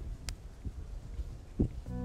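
Quiet background ambience with a single soft, low thump about one and a half seconds in; guitar background music begins right at the end.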